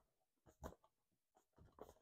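Near silence with a few faint, brief scrapes of cardboard: a boxed tarot set being slid within its hollow cardboard sleeve.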